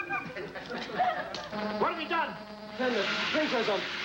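Studio audience laughter mixed with wordless voices, with a hiss of laughter and clapping rising near the end.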